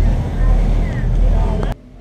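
Steady low rumble of a Bateaux Mouches sightseeing boat under way on the river, its engine and water noise heard from the open deck. It cuts off suddenly near the end.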